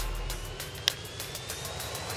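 Ballpark crowd noise under background music, with one sharp crack of a bat hitting a pitch about a second in, sending a ground ball to third base.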